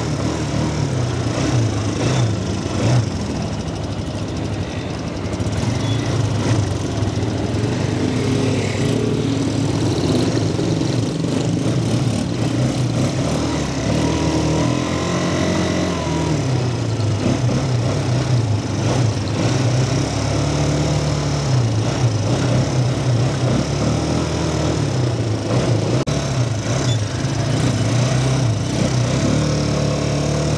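ATV (quad bike) engines running as a group of them rides along, the engine note rising and falling with the throttle.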